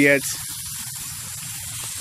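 Garden hose jet spraying water onto a solar panel: a steady hiss of spray.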